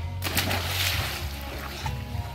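A small child jumping feet-first into a swimming pool: one splash about a quarter second in, then water sloshing and settling.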